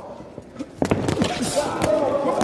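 Boxing-glove punches landing: one sharp smack a little under a second in, then a few lighter hits.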